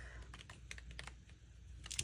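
Faint light clicks and rustles of a sticker book being handled and its pages leafed through, with a slightly louder rustle near the end.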